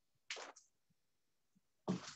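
Two short, soft breath sounds from a person close to the microphone, about a third of a second in and again just before the end, with near silence between.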